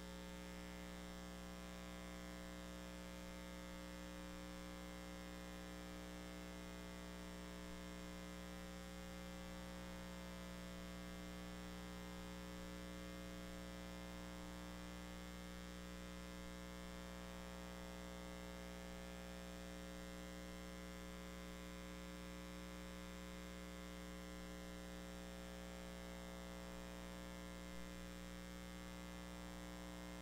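Steady electrical mains hum with a buzz of many overtones, unchanging throughout.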